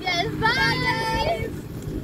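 Young girls' voices singing a short phrase in a drawn-out, sliding melody.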